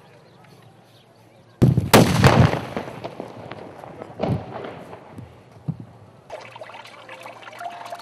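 Gunfire: a sudden burst of several shots about one and a half seconds in, echoing, then single further shots a little past four seconds and near six seconds.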